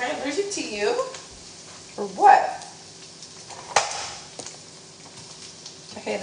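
Egg frying in a nonstick pan on the stovetop, a low steady sizzle, with one sharp clack about four seconds in.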